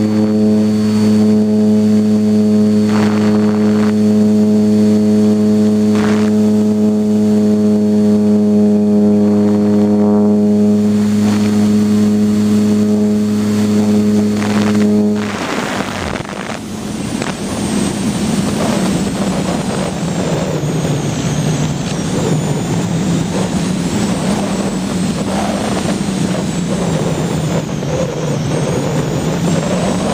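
Electric motor and propeller of an Art-Tech Diamond 2500 RC motor glider running at a steady pitch, recorded from a camera on board, then cut off suddenly about halfway through. After that, only rushing wind over the airframe and microphone as the glider glides unpowered.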